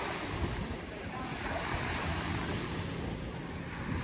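Small lake waves lapping at a grassy shore, with wind buffeting the microphone in low gusts. A faint steady hum joins about halfway through.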